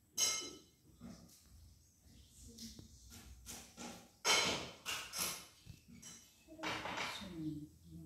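A woman murmuring a prayer under her breath in short, partly whispered phrases. A brief sharp ringing sound comes just after the start.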